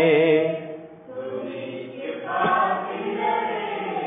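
A church congregation sings a Tamil worship hymn unaccompanied. A long held note fades out about half a second in, and after a short dip near one second the singing continues more softly.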